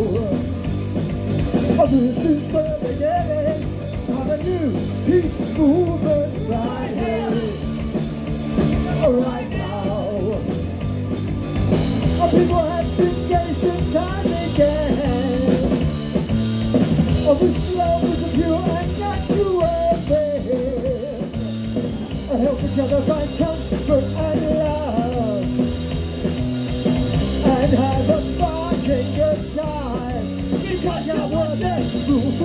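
A punk rock band playing live, with distorted electric guitar, bass guitar and drums, and a male lead vocal sung over them.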